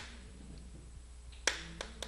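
Chalk striking and writing on a blackboard: a few sharp clicks, the loudest about a second and a half in, with another just after it.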